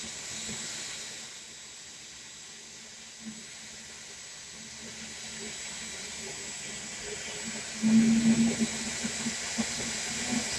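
Dyson Airwrap hair styler running, its fan blowing a steady airy hiss with a thin high whine from the motor as hair is wrapped around the curling barrel. About eight seconds in it gets louder and a low hum joins.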